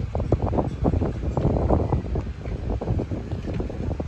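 Wind buffeting the microphone of a hand-held camera carried while walking, a constant low rumble broken by frequent irregular rustles and knocks from handling.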